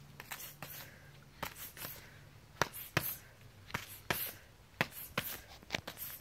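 Gloved punches smacking against boxing gloves: about fifteen sharp slaps in quick, irregular bunches of two and three.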